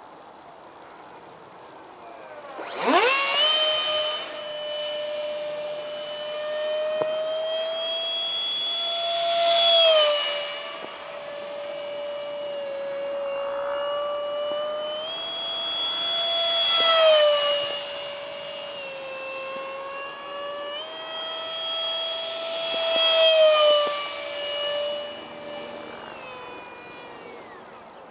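Detrum 70 mm electric ducted fan of a foam-board RC jet whining in flight. The whine comes in sharply about three seconds in and swells four times as the jet passes close, dropping slightly in pitch after each swell, then fades near the end.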